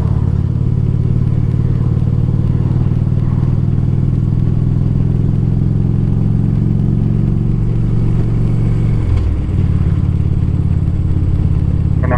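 Steady low engine drone with a deep, even hum. The pitch dips briefly about nine seconds in, then settles again.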